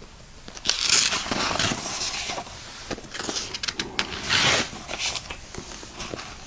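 Paper pages of a printed textbook being turned and handled, giving several rustling swishes with small clicks between them, the loudest about a second in and again near four and a half seconds.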